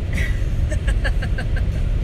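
Steady low road and engine rumble heard inside a moving car's cabin, with soft laughter about a second in.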